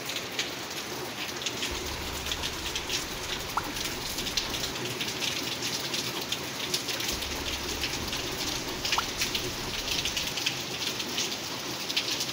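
Steady rain falling, an even hiss full of small drop patters.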